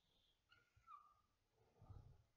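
Near silence: quiet room tone, with a faint short high note about halfway through.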